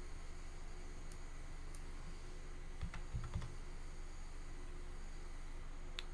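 A few faint computer keyboard keystrokes, with a small cluster about three seconds in, over a steady low electrical hum.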